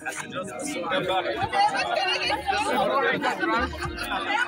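Several people talking at once in group conversation: overlapping chatter.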